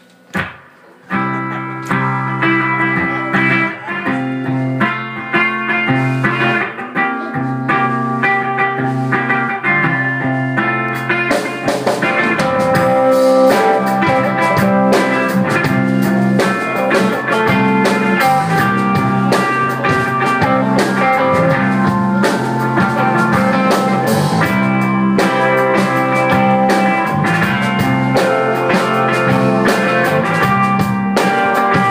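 A live rock band playing an instrumental song intro. It opens on electric guitar with a low sustained bass line about a second in, and the drums and the rest of the band come in partway through, making the music louder and fuller.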